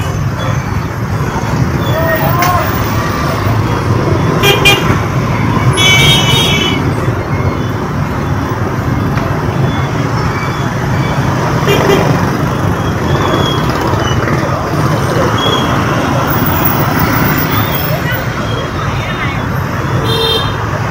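Busy city street traffic heard while riding through it: a steady wash of engine and road noise, with a vehicle horn sounding briefly about six seconds in.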